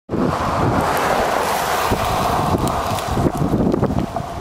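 Wind buffeting the microphone over the hiss of passing road traffic, the traffic hiss easing off in the second half.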